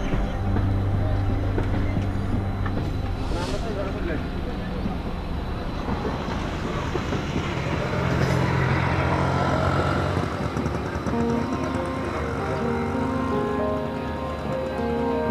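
Background music with held notes, mixed with the steady rumble and clatter of a passenger train's coaches running past, a little louder near the middle.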